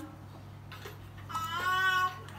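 A young child's drawn-out, high-pitched vocal squeal, beginning about a second and a half in and held on one slightly rising note.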